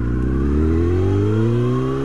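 Honda CBR954RR Fireblade's inline-four engine accelerating hard through one gear, its pitch rising steadily as the revs climb.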